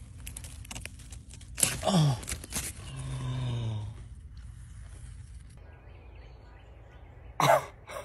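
A few light clicks and rustles of hands working among zucchini leaves and stems, then a surprised vocal "oh" about two seconds in and a low hummed sound of effort about a second later. Near the end comes a loud, short vocal exclamation.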